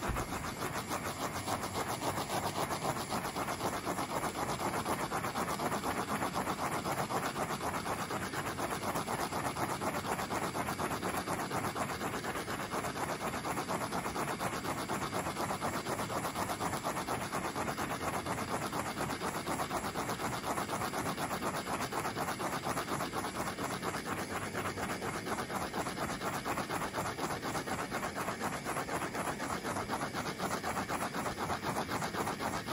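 Handheld torch flame running steadily with a fast flutter, played over wet epoxy on a turning tumbler to pop the surface bubbles.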